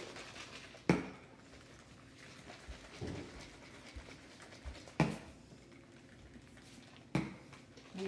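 Three sharp knocks: one about a second in, one in the middle and one near the end, with faint voices between them.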